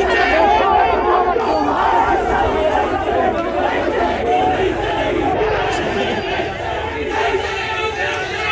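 Crowd of protesters shouting together, many voices overlapping without a break.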